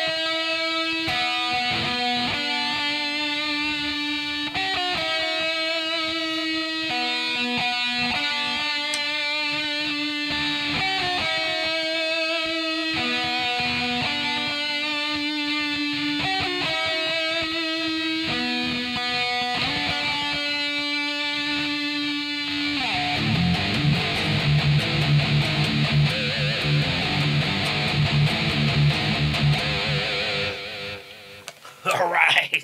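Kiiras custom F-form electric guitar played through a distorted, heavy-metal tone: a slow melodic lead of held notes with vibrato. About 23 seconds in it switches to fast riffing on the low strings, which stops near the end.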